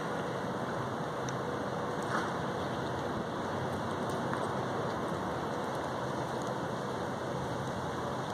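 A steady rushing noise of outdoor background, even throughout, with a few faint ticks.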